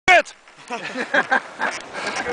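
Human voices: a short, loud exclamation right at the start, falling in pitch, then quieter talking.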